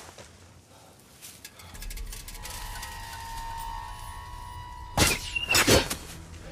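Film soundtrack of a sword fight: a low rumble and tense, held score tones build up, then two loud, sudden swishing strikes land about a second apart near the end.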